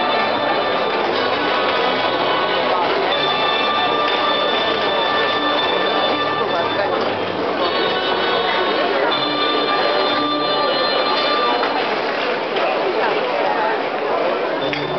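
Crowd chatter from a large standing audience, with high ringing bell-like tones held for a few seconds at a time that break off and start again several times.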